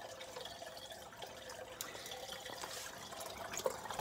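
Faint, steady water trickling with occasional drips as a hydroponic grow bed of clay pebbles floods with water from the aquarium below.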